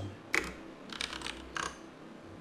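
Computer keyboard keystrokes: a short, uneven run of typing clicks, the loudest about a third of a second in and a quick cluster of keys after the one-second mark.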